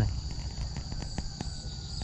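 Insects, crickets or cicadas, chirring in a steady high-pitched chorus, with a scatter of light clicks over it.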